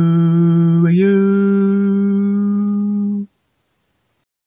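A man's voice singing long held notes of a chant-like song on the word 'you'. About a second in it steps up to a higher note, holds it, then cuts off suddenly a little after three seconds.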